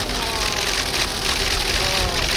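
Street noise dominated by a vehicle engine running steadily, with faint voices in the background.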